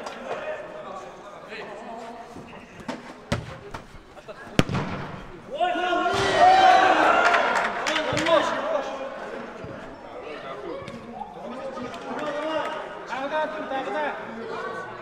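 Footballers' voices shouting on the pitch, loudest from about six to nine seconds in, with a few sharp thuds of the ball being kicked a little before that.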